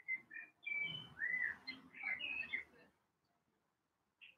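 A songbird chirping and whistling outdoors: a quick run of short, clear notes, one rising and falling, for about three seconds before it stops.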